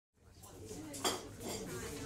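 Quiet diner ambience fading in: faint background chatter with dishes and cutlery clinking, and one sharper clink about a second in.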